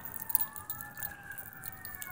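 Faint emergency-vehicle siren wailing in the background, its pitch gliding up and down.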